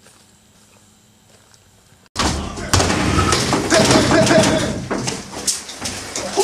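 Faint quiet in the woods with soft footsteps and a steady high tone, then about two seconds in a sudden jump to loud, dense noise of sharp knocks and shouting voices as Marines clear a room in a cinder-block building.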